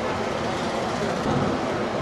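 Steady background noise: an even low rumble and hiss with no distinct events, of the kind road traffic makes.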